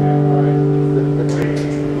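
Acoustic guitar chord ringing on, one steady pitch with its overtones fading slightly, before a fresh strum near the end.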